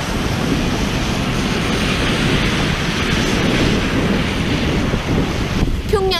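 Steady, loud rushing noise of wind on the microphone mixed with cars passing on the street. It cuts off abruptly near the end.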